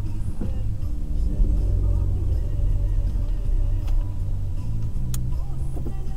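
Steady low rumble of a car idling in stopped traffic, heard from inside the cabin, under background music. One sharp click about five seconds in.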